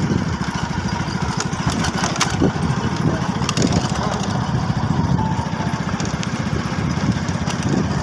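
Motorcycle engine running steadily with a fast, even pulse, heard from on board while riding.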